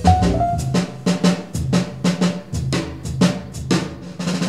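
Jazz outro music: the band's last pitched notes fade early on, and a drum kit carries on alone with quick snare and tom hits, several a second.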